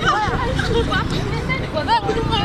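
Several players' voices calling out and shouting over one another during football training, over a low steady rumble.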